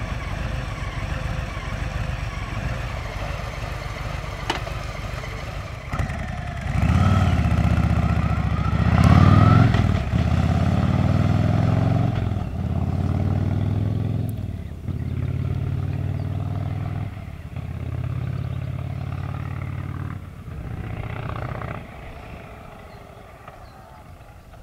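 Harley-Davidson Street Bob 114's Milwaukee-Eight 114 V-twin idling, then pulling away about six seconds in and accelerating through the gears, the revs climbing and dropping at each shift every two to three seconds. The sound fades as the bike moves away.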